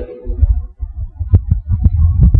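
Low, irregular thumping and rumble, with a few short, faint clicks in the second half.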